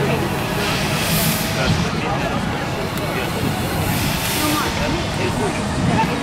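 Busy outdoor amusement-park background: scattered distant voices over a steady low machine hum, with two brief bursts of hissing noise, about a second in and again just past four seconds.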